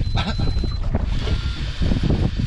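Wind buffeting the microphone as a low, uneven rumble, with a faint thin high whistle in the first second.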